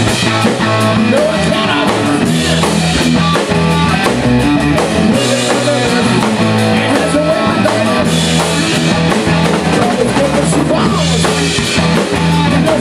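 Live rock band playing loud and steady: distorted electric guitars over a full drum kit, with a low bass line and regular drum hits.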